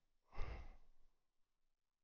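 A man's short sigh, one breath out that starts sharply and fades within about half a second.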